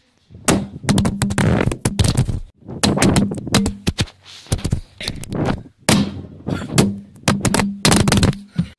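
Handling noise from a handheld camera: clusters of irregular knocks, thuds and rubbing, each lasting about a second, with short quiet gaps between them and a low hum under the louder stretches.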